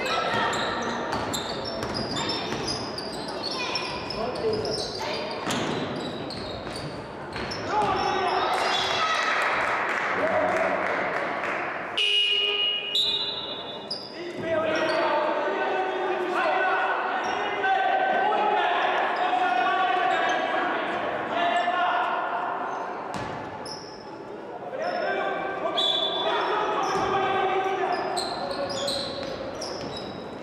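Basketball game on a hardwood court: the ball bouncing, sneakers squeaking and players and spectators calling out, all ringing in a large gym.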